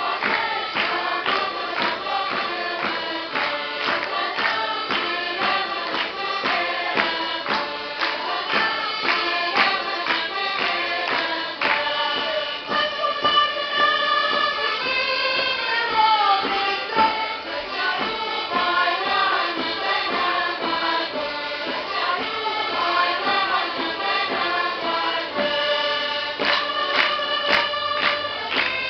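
Portuguese folk round-dance song (roda) sung by a group of voices over a steady percussive beat. The beat thins out for a few seconds around the middle while the voices hold longer notes, then comes back.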